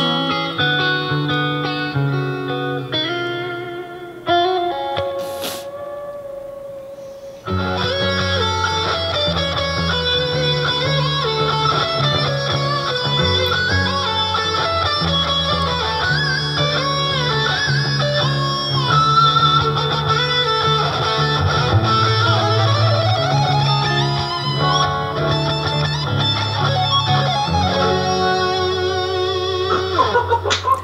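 Electric guitar playing. A quieter melodic passage fades, then about seven seconds in a louder, fuller section starts, with sustained low notes under a busy lead line.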